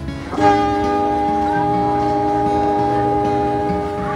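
Train horn sounding one long, steady blast of several tones together. It starts sharply about half a second in and is held for about three and a half seconds.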